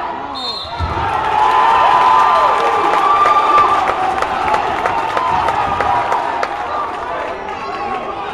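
A heavy thud of a wrestler being thrown onto the gym mat, then spectators yelling and cheering, loudest for a few seconds after the throw before easing off.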